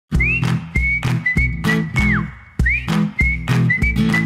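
Bouncy cartoon intro jingle: a whistled melody with sliding notes, rising at the start and dropping away at the end of phrases, over a regular bass and drum beat.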